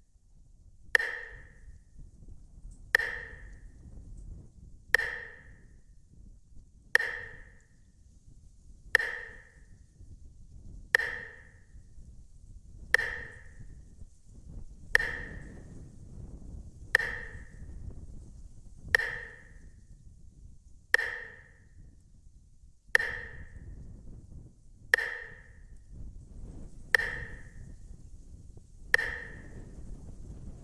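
A short, sharp, ringing ping sounding once every two seconds, evenly spaced like a metronome or clock marking time, over a low steady rumble.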